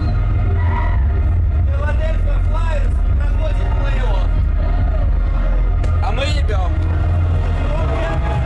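Several people talking backstage over a loud, steady low rumble of muffled, bass-heavy music from the venue's sound system.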